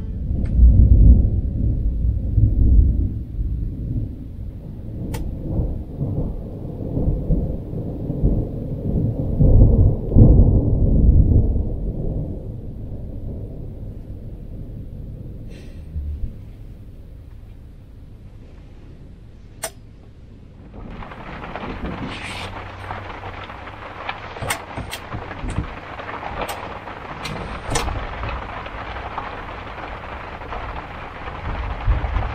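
Thunder rumbling through the first dozen seconds, fading, then from about twenty seconds in rain pouring down on the trailer, heard from inside, with a few sharp ticks.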